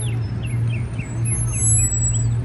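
Steady low hum of an idling vehicle engine, with a small bird chirping in short notes repeated several times a second.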